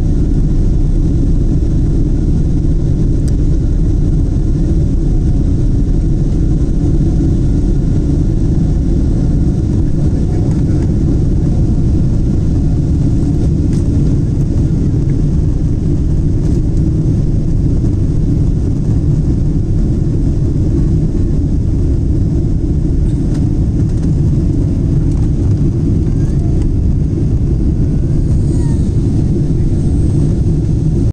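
Boeing 777-200LR's GE90 turbofan engines at takeoff thrust, heard from inside the cabin over the wing: a loud, steady deep rumble as the airliner lifts off and climbs away.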